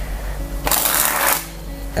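A Bicycle Pluma deck of air-cushion-finish playing cards sprung from one hand to the other: one fast flutter of card flicks lasting under a second, about halfway through, over background music.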